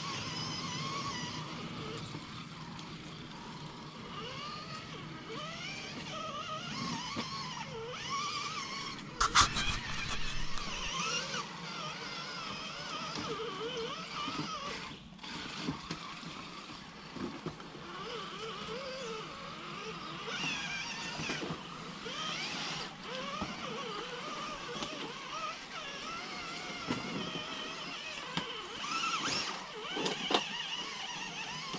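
Electric motors and geartrains of two RC scale crawler trucks whining as they crawl over creek rocks and through shallow water, the pitch rising and falling with the throttle. A sharp knock sounds about nine seconds in.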